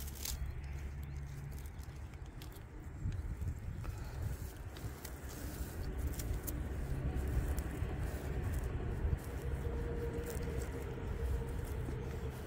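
Hands scraping and rustling in loose soil and wood-chip mulch, digging around the base of a plant to pull up its roots, with many small scattered crackles over a steady low rumble.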